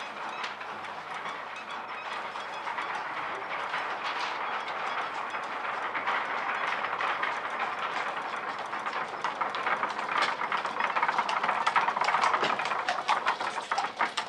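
A horse-drawn carriage rattling over cobblestones: a dense clatter of iron-rimmed wheels and hooves that grows louder toward the end.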